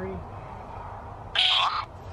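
Necrophonic ghost-box app playing through a phone's speaker: a steady hiss with a short, loud, chopped sound fragment about a second and a half in.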